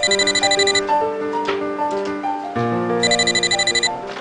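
Corded desk telephone ringing: two short bursts of a rapidly pulsing high ring about three seconds apart, over background music.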